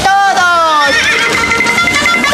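A high, loud cry that falls in pitch over about a second, followed by steady background music.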